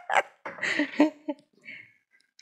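A woman laughing in short breathy bursts that die away in the second half.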